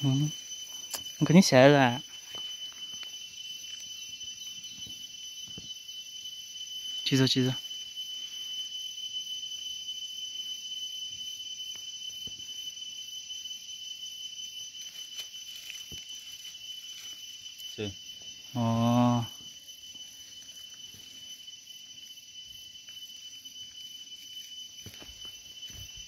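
A steady high-pitched whine at two pitches runs throughout. Three short voice sounds break it: one near the start, one about seven seconds in and one near the end.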